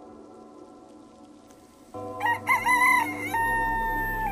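Soft ambient music, then about halfway in a rooster crows once: a few short rising and falling notes, then a long held note.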